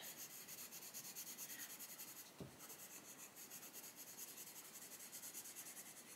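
Coloured pencil (Castle Arts Gold) stroked lightly back and forth on paper, a faint rapid scratching. There is a single small tap about two and a half seconds in.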